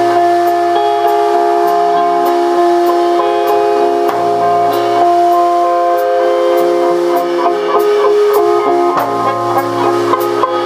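Live band music: long held notes that change pitch every few seconds, over a steady high tick keeping time just under twice a second.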